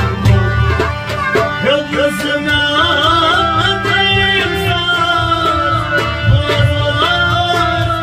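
Harmonium playing sustained chords while a man sings a Kashmiri Sufi song, his voice bending and ornamenting the notes from about two seconds in. A steady percussion beat runs underneath.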